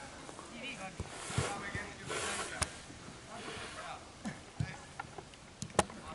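Faint, distant shouts of players across an open football pitch, with a few sharp knocks of the ball being kicked; the loudest is a quick double knock near the end.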